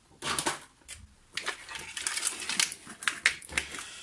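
Light plastic clicks, taps and knocks of the Tascam Porta One Ministudio's plastic case being handled and turned over: a brief cluster at the start, then a longer run of irregular clicks from about a second and a half in.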